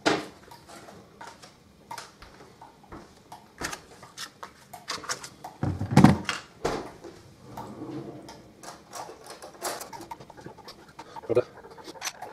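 Kitchen handling sounds as margarine is fetched and spooned into a metal cake tin: scattered clicks and knocks of a spoon and containers, with a louder thump about halfway through.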